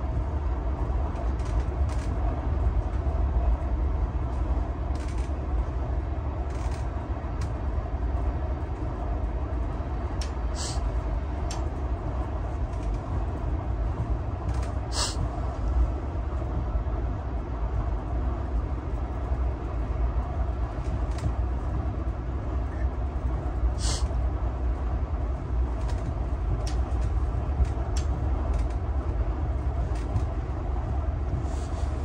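Inside a moving passenger train carriage: the steady low rumble of the train running on the rails. Several sharp clicks cut through it, the clearest about ten, fifteen and twenty-four seconds in.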